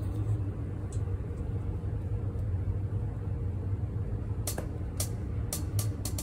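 Steady low hum of room noise, with a few light clicks, most of them close together near the end.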